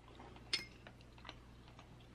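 A few faint, sharp clicks of eating, the loudest about half a second in.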